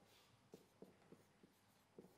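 Faint taps and strokes of a marker writing on a whiteboard, a few short ticks about a third of a second apart as letters are formed.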